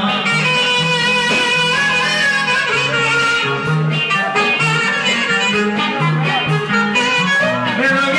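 A live Greek folk band plays an instrumental passage: a clarinet carries an ornamented melody over a steady bass and rhythm accompaniment.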